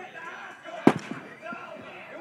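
A baseball bat hitting a pitched ball once, a sharp crack about a second in, with people talking in the background.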